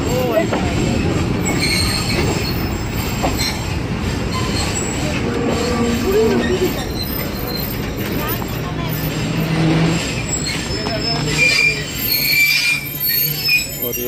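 Passenger train coaches rolling slowly into a station, wheels running on the rails, with high brake and wheel squeal in the last few seconds as the train slows to a stop.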